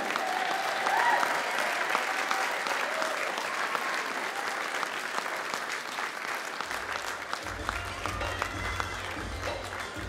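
Audience applauding, with music playing underneath. A deep low rumble comes in about seven seconds in.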